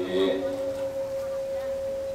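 Public-address system feedback: a single steady ringing tone carried by the sermon microphone, heard plainly once the voice stops just after the start.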